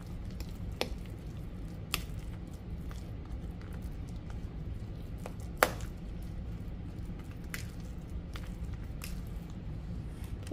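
A metal spoon stirring and mashing moist cornbread dressing in a ceramic bowl: soft wet squishing, with a few sharp clicks of the spoon against the bowl, the loudest about five and a half seconds in. A low steady hum runs underneath.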